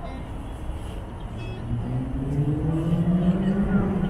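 A vehicle engine accelerating: a low hum that rises steadily in pitch and grows louder from about a second in.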